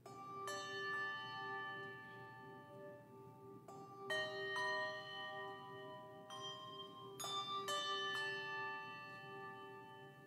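Handbell choir playing a slow, reflective piece in a minor key. Chords of several bells are struck a few at a time and left to ring and die away, over a low note that sounds throughout with a gentle pulse.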